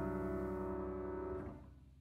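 The last piano chord of a jazz number ringing out and slowly dying away, fading to silence near the end.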